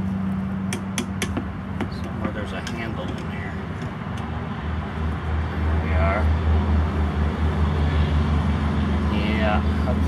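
An engine running steadily, a low drone that gets louder about halfway through, with a few light clicks near the start.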